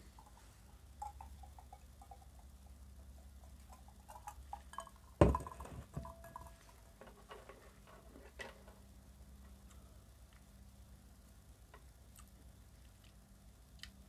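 A stemmed glass set down on a hard surface about five seconds in: one sharp knock with a brief ring. Faint small ticks and clicks come before and after it.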